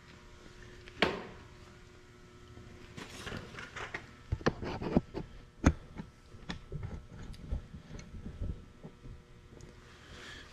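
Camera being handled and fitted onto a stand: a sharp knock about a second in, then scattered clicks and rustles, over a faint steady hum.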